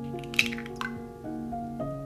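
A raw egg dropping into a small glass bowl: a brief wet splat about half a second in.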